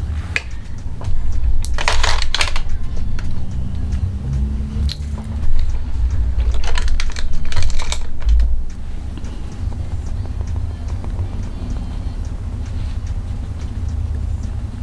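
Makeup items being rummaged and handled on a desk close to the microphone: clattering, clicking and rustling, loudest in two spells about two and seven seconds in, over a steady low rumble.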